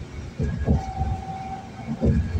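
A single steady tone held for about a second, with a low thump just before it and another right after it ends, over the car's road noise.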